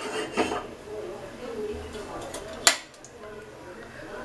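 Stainless steel pressure cooker clanking against the gas stove's pan support as it is set in place: a light knock under half a second in, then a sharper metal clank nearly three seconds in.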